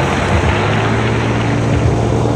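Honda Click 125i scooter's small single-cylinder engine running at a steady cruise, a constant drone mixed with wind rushing over the microphone.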